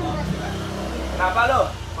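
A motor vehicle's engine running low on the street, fading out a little past a second in, under a man's short remark.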